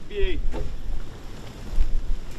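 Wind buffeting the microphone, a low uneven rumble that swells briefly near the end, with a short voice call just after the start.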